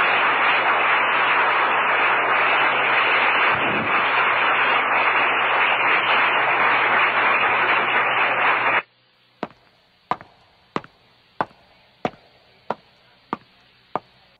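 Audience applauding, cut off abruptly about nine seconds in. Then a faint, even series of sharp clicks, about one and a half a second.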